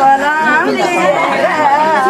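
Several people talking at once: overlapping chatter of a crowd of voices.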